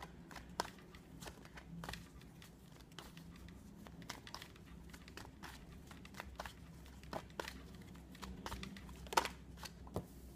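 Rider-Waite tarot cards being shuffled hand to hand: irregular soft flicks and clicks of cards sliding and tapping together, with a sharper snap about nine seconds in.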